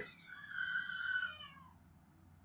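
A soft, high-pitched, animal-like call, about a second long, wavering slightly and sliding down in pitch at its end.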